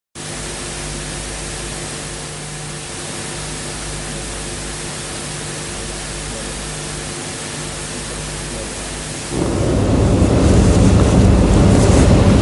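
Steady hiss of recording noise with a low, steady electrical hum underneath. About nine seconds in, the noise jumps much louder and coarser, with more low-end energy.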